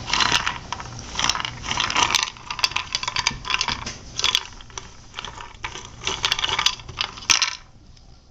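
A few pieces of dry cat food rattling inside a nearly empty cube-shaped food-puzzle toy as a cat paws and pushes it, in repeated bursts of clattering that stop shortly before the end.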